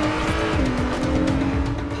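Acura NSX Type S's twin-turbo V6 running hard at speed on a track, its note holding steady with a slight dip in pitch about half a second in.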